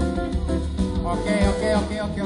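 Live band playing Brazilian dance music, with guitar over drums and percussion.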